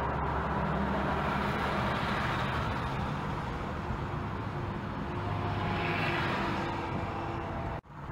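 Steady road, tyre and engine noise inside a car driving at motorway speed. The sound drops out suddenly for a moment near the end.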